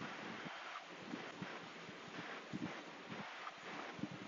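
Faint steady hiss of room noise with scattered soft taps and scratches from a stylus drawing on a pen tablet.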